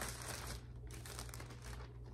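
Plastic packaging crinkling as it is handled, in two stretches of rustling about half a second apart.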